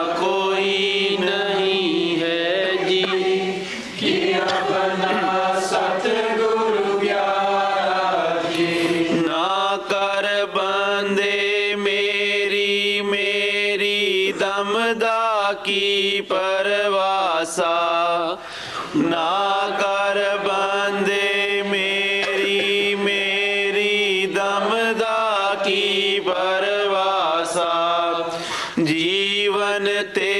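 A voice chanting a slow devotional melody, holding long notes in phrases of several seconds, each phrase breaking off briefly before the next.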